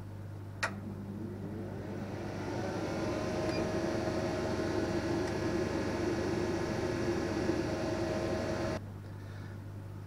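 A click, then a small electric motor on the laser cutter spinning up over about two seconds. It runs steadily with a hum and cuts off suddenly near the end.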